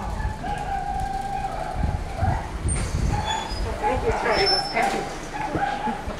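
Dogs whimpering and whining in thin, wavering tones, over low rumbling handling noise.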